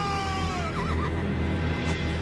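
A horse's long whinny that slowly falls in pitch and breaks into a shaky trill about a second in, over a low sustained music drone, with a short sharp hit near the end.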